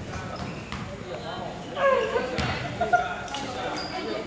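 Voices calling out during a basketball game, loudest about halfway through, with a few separate thuds of a basketball bounced on a hardwood court.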